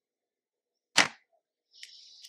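A single sharp click at the computer about a second in, then a faint hiss near the end.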